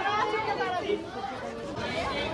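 Chatter of several people talking at once, overlapping voices with no clear words.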